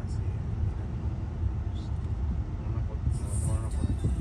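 Steady low rumble inside a car's cabin, with the faint voices of a crowd outside coming in near the end.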